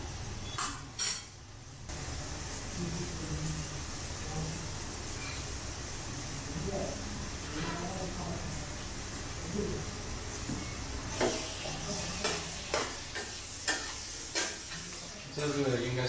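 Chicken, chilies and onions sizzling gently in a wok over a weak gas flame, with a metal spatula stirring and clinking against the pan; the knocks come thick and fast over the last few seconds.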